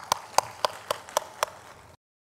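Hands clapping in a steady, even rhythm, about four claps a second, each clap sharp and distinct. The sound cuts off abruptly near the end.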